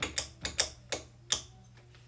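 A quick, uneven run of about six sharp clicks or knocks in the first second and a half.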